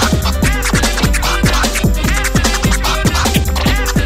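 DJ mix of fast electronic dance music with turntable scratching over the beat. Quick downward-sweeping sounds repeat several times a second.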